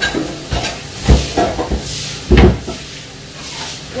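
Njangsa sauce sizzling in a frying pan on a gas stove, with a steady hiss. Several dull knocks break in, the loudest about a second in and again near two and a half seconds.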